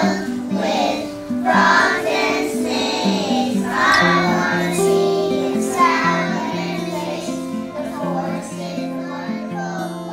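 A group of young children singing a song together in unison, the notes held and stepping from one to the next.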